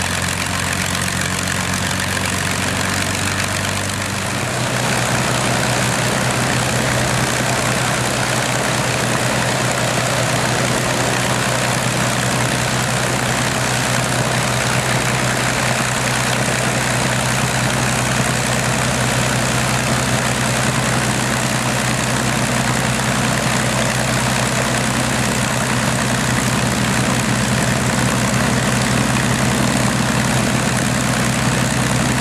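P-51D Mustang's Packard Merlin V-12 engine running at idle with the propeller turning. About four and a half seconds in the engine speed steps up a little and then holds steady.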